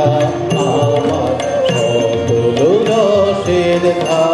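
A man singing a song to his own harmonium accompaniment, with tabla strokes keeping the rhythm; the voice slides up in pitch a little past halfway.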